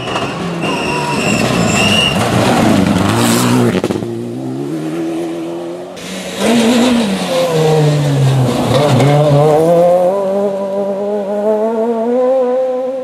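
Rally cars at full throttle on a gravel stage. First a Mitsubishi Lancer Evolution X's turbocharged four-cylinder revs high, then drops in pitch as it lifts off about three seconds in. About six seconds in a Renault Clio rally car comes through: its engine falls in pitch, then climbs steadily as it accelerates hard toward the end.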